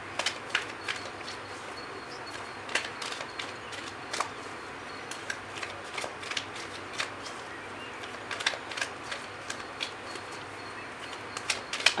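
Tarot deck being shuffled by hand: irregular short snaps and clicks of the cards over a faint steady hiss.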